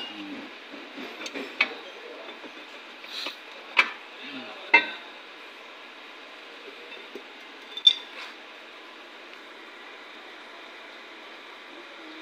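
Scattered metallic clinks and taps of hand tools on a car's rear wheel hub, a few sharp knocks a second or more apart over a faint steady hiss. The hub is being worked loose to get at a faulty ABS wheel-speed sensor.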